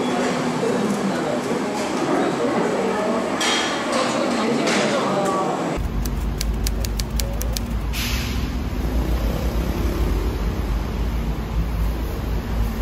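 Indistinct voices in a busy room for about the first six seconds. After a sudden change, a steady low outdoor rumble, with a quick run of about eight sharp clicks shortly after the change.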